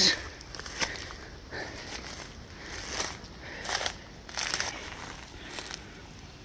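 Footsteps crunching through dry grass and fallen leaves at an unhurried walking pace, about one step a second.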